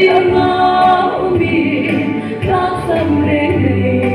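A woman singing a gospel song into a handheld microphone, amplified, with long held notes that slide between pitches.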